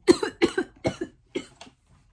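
A woman coughing in a quick fit of about six coughs that die away within a second and a half.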